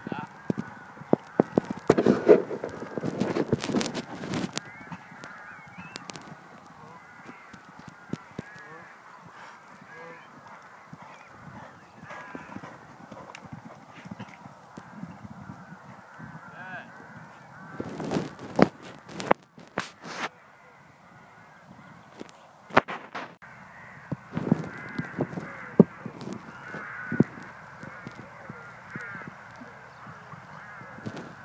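Birds calling steadily in the background, with bursts of knocks and rustling now and then, loudest about two to four seconds in and again around eighteen to twenty seconds in.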